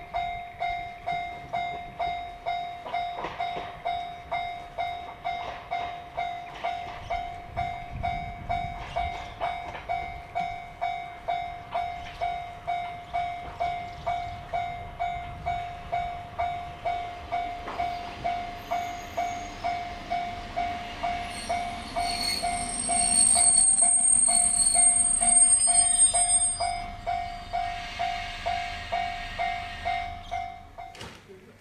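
A level-crossing warning bell rings steadily, about three strikes every two seconds, as an Isumi Railway diesel railcar approaches. In the last third the railcar's engine and wheels grow loud as it pulls into the platform, with a high brake squeal lasting a few seconds.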